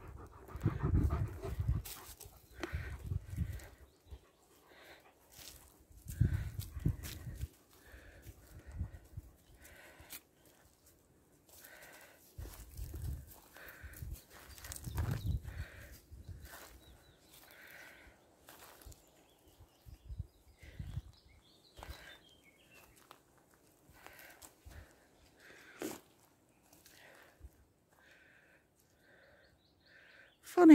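Walking along a leaf-littered woodland path: irregular footsteps and rustling, with low rumbles on the microphone coming and going every few seconds.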